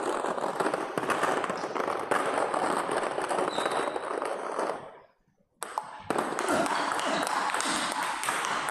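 Busy table-tennis training hall: a dense clatter of many ping-pong balls clicking off bats and tables, over a murmur of background voices. The sound cuts out completely for about half a second near the middle, then returns.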